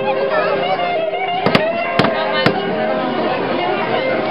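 Sharp knocks of a fish being clubbed: a quick double knock about a second and a half in, then two more about half a second apart, over crowd chatter and music.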